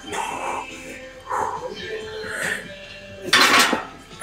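Iron weight plates on a loaded barbell clinking as the bar is lifted off the rack for a back squat, over background music with vocals. A loud rushing burst comes near the end.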